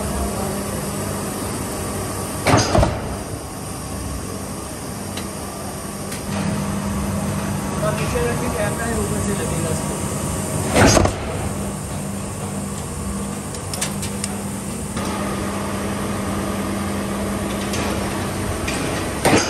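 Large mechanical stamping press running with a steady hum, its die coming down on steel strip twice, about eight seconds apart, each stroke a loud crash with a short ring.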